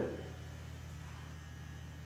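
Steady low electrical mains hum with faint room noise.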